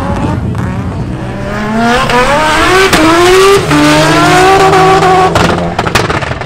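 A performance car's engine accelerating hard. The revs climb, drop with a gear change about three and a half seconds in, then climb again until the sound cuts off near the end.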